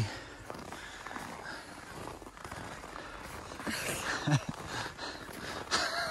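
Outdoor background noise with a short human voice sound about four seconds in and a louder burst of voice near the end.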